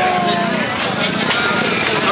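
A small engine running steadily, with people talking in a street crowd over it.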